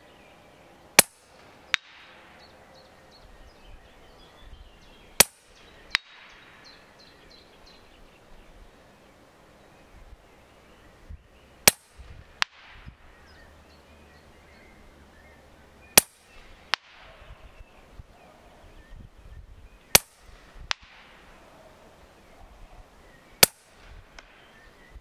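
Huben K1 .25-calibre regulated PCP air rifle firing six shots several seconds apart, each a sharp crack. A fainter knock comes about three-quarters of a second after each shot: the pellet hitting the target at about 100 m.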